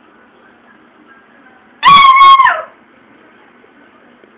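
A hunting dog giving one loud, high-pitched cry, under a second long, that drops in pitch as it ends.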